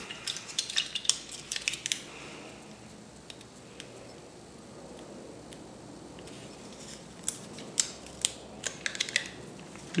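Light clicks and taps from hands handling strips of 35mm film and tape, in two clusters: during the first two seconds and again from about seven to nine and a half seconds, with quiet room noise between.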